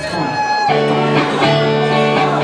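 Live band's electric guitars come in about two-thirds of a second in with a steady ringing chord, cutting across crowd voices and a held shout.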